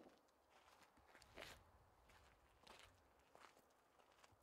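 Faint footsteps crunching on gravel, several uneven steps with the loudest about a second and a half in.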